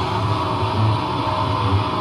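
Live rock band's amplified instruments ringing out in a sustained held chord, with a throbbing low bass hum and no drum hits.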